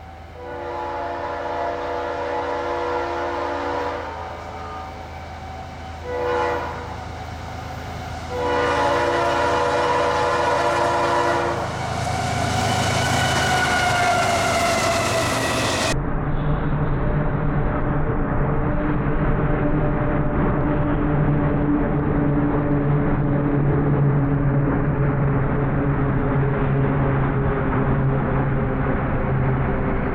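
CSX diesel freight locomotive's horn sounding for a grade crossing: a long blast, a short toot, then a final long blast whose pitch drops as the lead unit goes by. Then the steady drone of the diesel locomotives rolling past close by.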